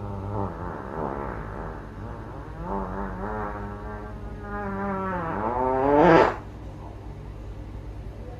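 A long drawn-out fart, about six seconds of wavering, pitched sound that ends in a louder rising squeal, over a steady low hum.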